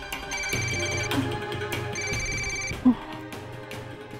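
Mobile phone ringtone ringing in two short electronic bursts, over a background music score.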